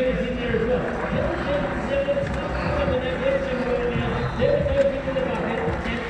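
Indistinct voices over a steady background din, with no clear words.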